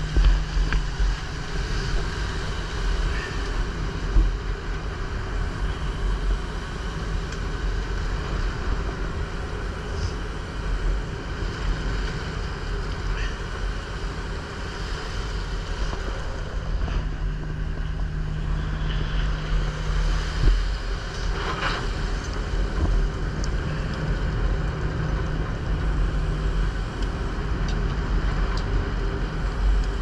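A fishing boat's engine and net-hauling machinery run steadily while the seine net is hauled aboard, with sea wash and wind buffeting the microphone. A low hum fades out early on and returns about halfway through. There are a few short knocks.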